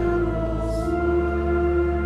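Church congregation singing the sung gospel verse to organ accompaniment, in held, sustained notes; the chord changes about a second in.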